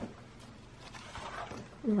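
Soft rustle of paper as pages of a spiral-bound colouring book are turned by hand.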